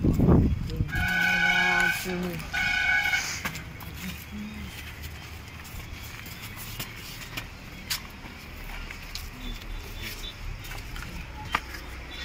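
A vehicle horn sounds twice, a held honk of about a second and then a shorter one. After it come faint scuffs and taps of feet on rock.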